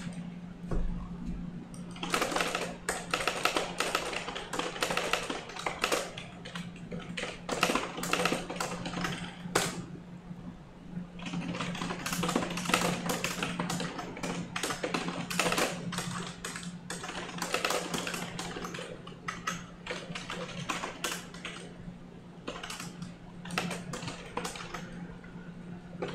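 Fast typing on a computer keyboard: dense runs of key clicks in bursts, with a short pause about ten seconds in and a briefer one near the end.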